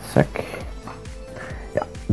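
A cardboard product box being opened by hand: a few short taps and knocks of the box and lid, near the start and again near the end.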